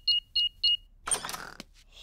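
House burglar alarm keypad beeping as its buttons are pressed to switch the alarm off: a quick run of short, evenly spaced, high two-note beeps in the first second. About a second in, a brief noise of the front door opening follows.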